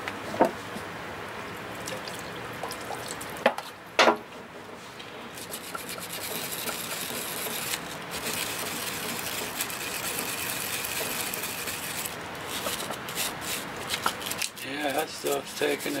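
A small paintbrush scrubbing acetone over the painted block of a 1980 Evinrude 25 hp outboard powerhead to strip the old paint: a steady scratchy swishing, with a few sharp knocks in the first four seconds.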